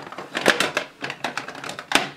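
Plastic makeup compacts clicking and clacking against each other and against the clear plastic storage box as they are slotted in by hand: a run of sharp clicks, the loudest about half a second in and another near the end.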